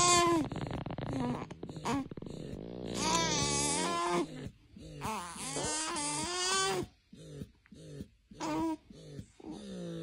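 A young baby grunting and whining: several drawn-out strained vocal grunts, then a run of short quick grunts about three a second near the end. The baby is straining to poop while feeding from a bottle.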